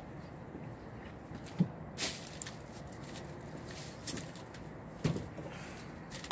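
A few short knocks and clicks over a faint steady background, the sharpest about one and a half and two seconds in, from a man pulling off work gloves and moving about on a wooden deck.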